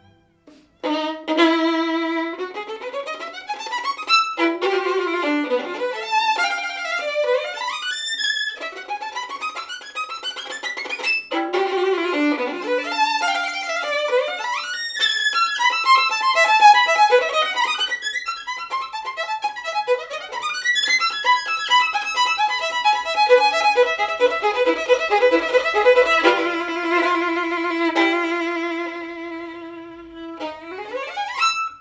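Solo violin playing a fast virtuosic piece, starting about a second in. It runs through many quick rising runs between held notes, in the up-bow staccato technique being shown off, and closes on a long sustained low note.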